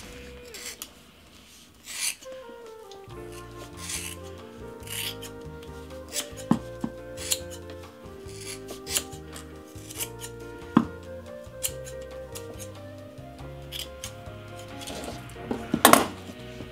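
Large scissors cutting through a thick ponytail of synthetic doll hair in many short, irregular snips, over background music.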